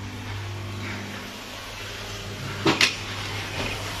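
Steady low hum of an aquarium air pump running in a small equipment room, with two quick knocks close together about three quarters of the way through.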